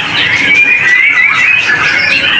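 Young white-rumped shamas (murai batu fledglings) in covered cages chirping and calling over one another: a continuous, busy chatter of many high, wavering notes.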